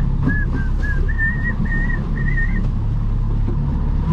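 A person whistling a short tune, a run of clear notes that stops about two and a half seconds in, over the steady low drone of the boat's motor running under way.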